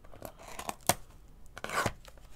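A small cardboard trading-card box being opened by hand. Light scrapes and clicks lead to a sharp snap about a second in, then a brief papery rustle near the end as the card pack is drawn out.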